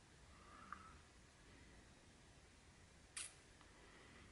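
Near silence: room tone with two faint short clicks, one under a second in and a sharper one near the end.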